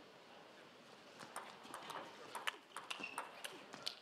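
Table tennis rally: the ball clicks sharply against the bats and the table in a quick, regular back-and-forth, starting about a second in and going on to near the end.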